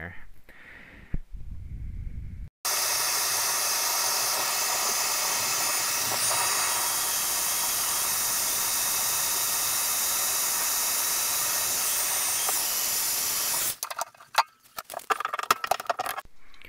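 Handheld heat gun running steadily, an even fan-and-air hiss, heating the metal mixing valve around a stuck Delta shower cartridge so the metal expands and frees it. The hiss starts abruptly a few seconds in and cuts off near the end, followed by a few clicks and knocks as pliers take hold of the plastic cartridge.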